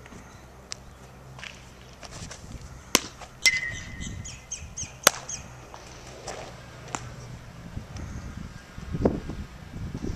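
Sharp pops of a pitched baseball smacking into a leather catcher's mitt, about three seconds in and again about two seconds later. Between them a bird gives a quick run of high chirps.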